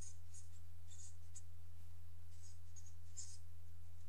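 Sharpie felt-tip marker writing on paper: a series of faint, short scratchy strokes as a word is written out, over a steady low hum.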